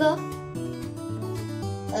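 Background music on acoustic guitar, with plucked and strummed notes.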